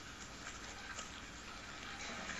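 Faint, steady background hiss, with a faint tick about a second in.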